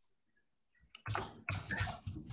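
Silence for about a second, then a few irregular bursts of rustling noise coming over a video-call audio line.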